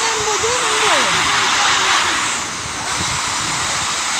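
Flash-flood water rushing in a loud, steady wash, with men's voices calling faintly beneath it.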